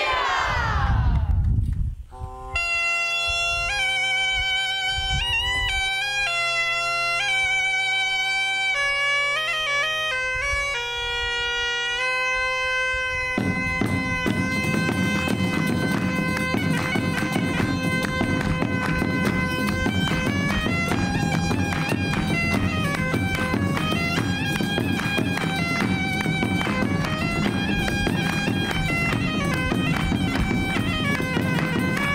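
Bagpipe playing a folk dance tune: a steady drone under the chanter's melody, starting about two seconds in. About halfway through a drum joins, beating steadily under the pipe.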